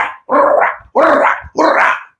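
A man's voice: three short, loud shouted calls of about half a second each, with no clear words.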